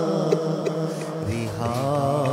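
A wordless chanting voice holding long, wavering notes, stepping down to a lower pitch about a second in.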